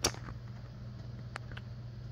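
Room tone with a steady low hum, a sharp click at the start and two faint ticks later.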